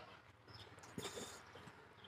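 Near silence with faint shuffling and handling noises and a light tap about a second in.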